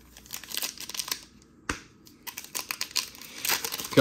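A trading-card pack wrapper crinkling and tearing as it is ripped open, in quick crackles, with one sharp click a little before halfway.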